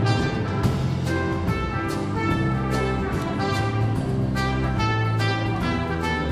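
Trumpet playing a melody in held notes over a live band of drum kit, electric bass and piano.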